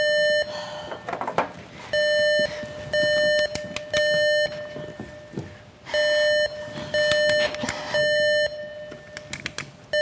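Fire alarm beeping in the temporal-three evacuation pattern: three half-second beeps a second apart, then a pause, repeating. It signals that the room's fire suppression system has gone off. A few clicks and knocks sound between the groups of beeps.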